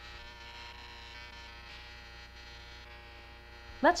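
A steady electric hum with many overtones, even and unchanging throughout.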